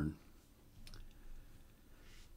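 A single faint click a little under a second in, over quiet room tone with a low hum; the end of a man's spoken word is heard at the very start.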